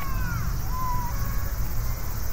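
Outdoor summer park ambience: a steady high drone of cicadas over a low rumble, with a few short rising-and-falling calls in the first second.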